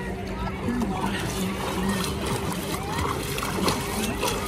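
Lake water splashing and sloshing around a swimmer's arm strokes close to the microphone, with many small splashes, over a steady low hum and people's voices in the background.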